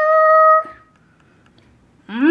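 A high voice singing a held, steady note that stops about half a second in, followed by quiet room tone.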